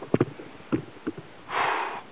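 Several light clicks and knocks of handling on the microphone, then one short sniff about one and a half seconds in, the loudest sound here.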